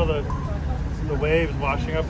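Steady low rumble of wind and rough, breaking seas around a sailboat crossing a tidal rage, with crew voices talking over it.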